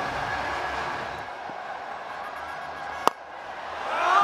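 Steady stadium crowd noise, then a single sharp crack of a cricket bat striking the ball about three seconds in, as the batsman advances down the pitch and drives.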